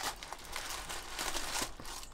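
Light rustling and crinkling handling noise, a run of small scratchy clicks, as things are moved about on the desk and the next fabric-covered cardboard bauble is picked up.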